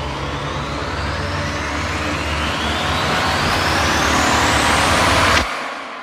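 A whoosh-riser sound effect for an animated title: a rushing noise sweeps steadily upward in pitch over a low rumble, growing louder for about five seconds, then cuts off sharply and fades out.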